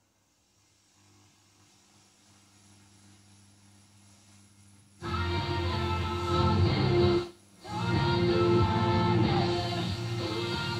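AWA Dimensional Sound B96Z radiogram's radio being tuned: a faint hum for the first half, then a music station with guitar comes in suddenly and loudly about halfway through, drops out for a moment about two seconds later, then plays on.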